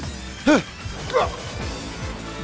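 Short sharp vocal cries, the loudest about half a second in and another just past one second, over dramatic background music.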